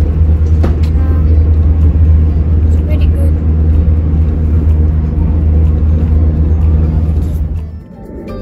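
Steady low rumble of a KTX high-speed train's passenger cabin in motion, with a few faint clicks. It fades out near the end.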